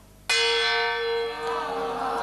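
A bell struck once: a sudden stroke a quarter second in, then a rich ringing tone that slowly dies away.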